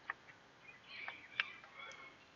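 Faint handling of a brake caliper guide pin and its rubber boot: two light clicks a little over a second apart, with soft rubbing in between.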